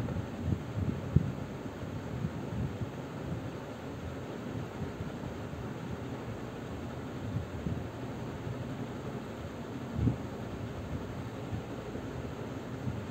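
Steady background noise, mostly low rumble with a little hiss, with a few soft low thumps: one about a second in and another near the end.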